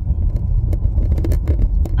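Inside a moving car's cabin: a steady low rumble of engine and road noise, with faint scattered clicks and rattles.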